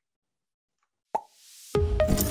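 About a second of silence, then a short pop and a rising whoosh. Outro music with a deep bass and bright, ringing notes starts near the end.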